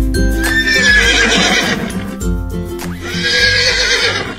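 A horse whinnying twice over background music, first about half a second in and again near the end.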